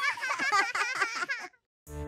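A baby giggling, a quick run of high, wavering giggles that cuts off about a second and a half in. After a brief silence, music starts near the end.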